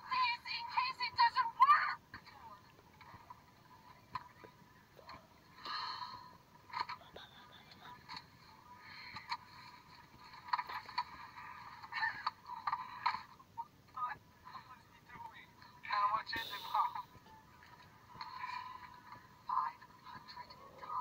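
Tinny, muffled voices from a video played back through a phone speaker, coming in short bursts with pauses between them. They are loudest in the first two seconds.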